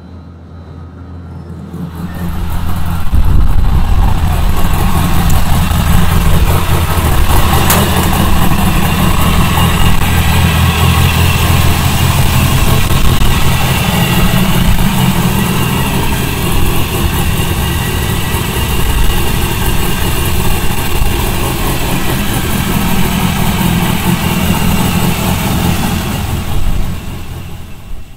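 The twin-turbocharged 9-litre V10 of a Dodge Viper idling steadily. It is muffled at first, as if through the dyno cell's sound-insulated wall, then loud and close from about two seconds in.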